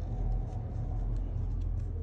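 A low, steady rumble with a few faint light ticks above it.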